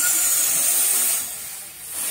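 Helium hissing out of a tank's inflator nozzle into a latex balloon as it fills. The high, steady hiss eases a little past halfway and swells again near the end.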